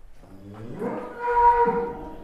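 A bull mooing: one long, low call that rises in pitch, then holds and swells, loudest about a second and a half in.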